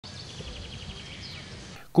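Outdoor background ambience: a low steady rumble with faint, quickly repeated bird chirps.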